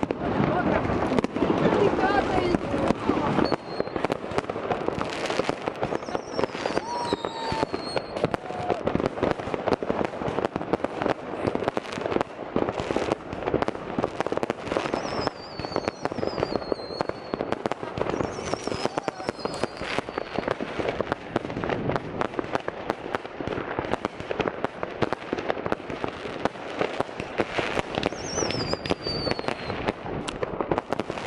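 Fireworks going off all around in a dense, continuous crackle of bangs and pops, with several high falling whistles at intervals.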